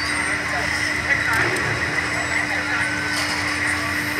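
Steady outdoor background noise with faint, indistinct voices and a constant low hum, picked up by the microphone on the ride capsule.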